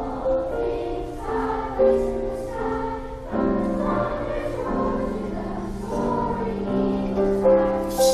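Children's choir singing a sustained, slow melody in parts.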